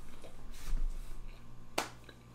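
A single sharp click about three-quarters of the way through, over faint room noise.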